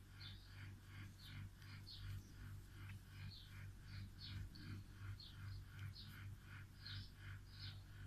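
Faint, evenly repeated bird chirping, about three short chirps a second, over a low steady hum.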